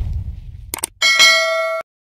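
Logo intro sound effect: a low boom dies away, two quick clicks follow, then a bright metallic bell-like ding rings for under a second and cuts off suddenly.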